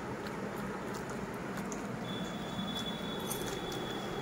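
Quiet room background with a few faint ticks; a thin, steady high-pitched tone comes in about halfway through and holds.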